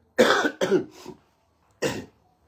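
A man coughing three times in quick, harsh bursts, the first two close together and the third about a second later.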